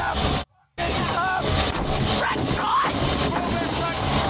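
Movie soundtrack: dense music with yelling voices, broken by a brief drop to silence about half a second in.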